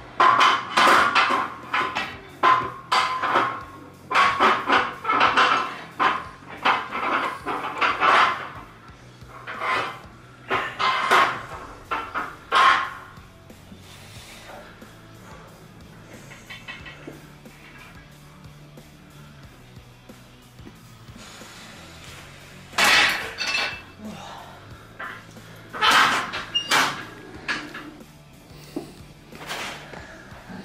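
Background music, loud for the first dozen seconds, then a lull of several seconds before two more short loud passages.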